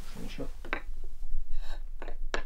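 A few short clacks of a small hard object knocked onto a floor: a tobacco pipe dropped and clattering, performed as a Foley sound effect.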